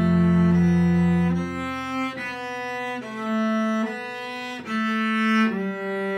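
Solo cello bowed: a long low note held for about the first second and a half, then a run of shorter sustained notes, each changing cleanly to the next.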